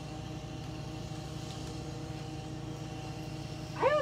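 Steady machine hum with several constant tones, unchanging throughout; a woman's voice starts just before the end.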